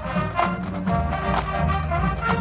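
Marching band playing live: massed brass holding chords, with percussion strikes about once a second.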